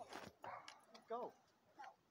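Faint, indistinct human voice: a few short voiced utterances with no clear words.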